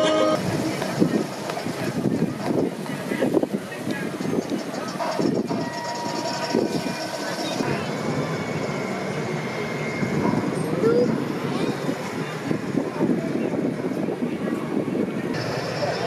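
Indistinct chatter of several people talking, with no words clear. A short tune with clear tones cuts off right at the start.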